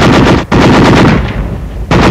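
Belt-fed machine gun firing loud bursts of automatic fire, with a short break about half a second in and the fire tailing off near the end.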